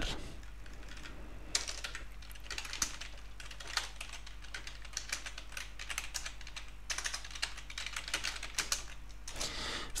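Typing on a computer keyboard: irregular runs of key clicks with short pauses, starting about a second and a half in.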